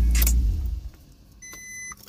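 Heavy low bass from the car's sound system fades out about half a second in. About a second and a half in, the Maserati's dashboard chime gives one steady electronic beep lasting about half a second.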